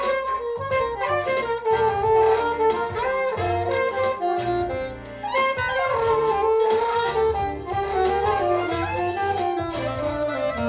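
An alto saxophone plays a melody of connected notes over a backing track with a bass line and drums. There is a short breath between phrases about halfway through, and a falling line near the end.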